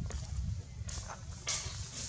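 Outdoor ambience: a steady low rumble of wind on the microphone, with two short rustles about one and one and a half seconds in.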